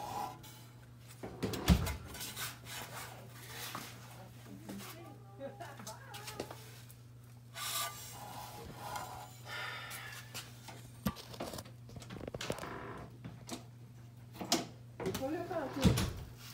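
Handling noise from a handheld phone moving close along the motorcycle's underside: rubbing and scattered knocks, one sharp knock about two seconds in, over a steady low hum.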